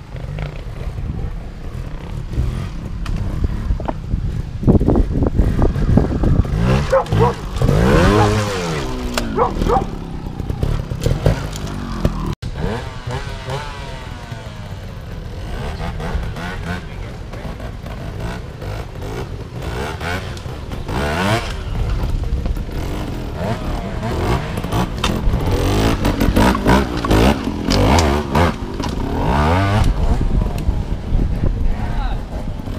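Trials motorcycle engines revving in repeated throttle blips as the bikes pick their way over rocks, the pitch rising and falling several times, busiest in two stretches.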